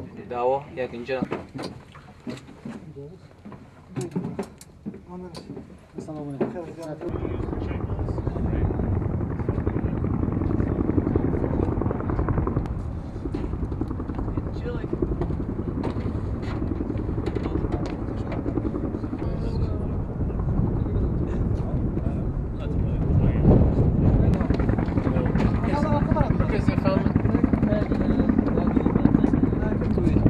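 A helicopter running close by, heard as a steady loud rush with a fast flutter, starting abruptly about seven seconds in. Voices come before it and are heard faintly under it.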